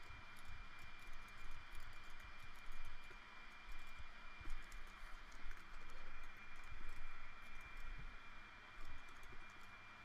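Computer keyboard keys and mouse buttons clicking in quick, irregular taps, over a steady faint high tone.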